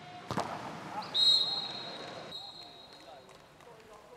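A sharp smack, then a referee's whistle blown about a second in: one long, steady, high-pitched blast, loudest at its start and fading away over the next two seconds.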